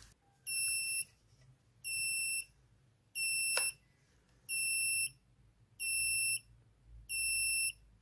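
Small buzzer on a TP4056 lithium-battery charger module sounding its full-charge alarm: six evenly spaced high-pitched beeps, each about half a second long, roughly one every 1.3 seconds. It signals that the cell has reached about 4.18 V and the module has cut off charging.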